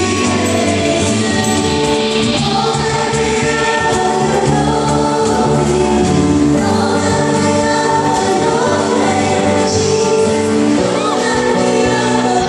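Live Christian worship music: a group of voices singing a gospel song over a band with sustained bass notes, loud and steady throughout.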